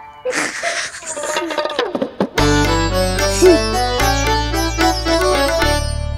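Background score: a brief noisy rustling stretch, then a plucked-string melody in the manner of a sitar comes in over a steady bass about two and a half seconds in.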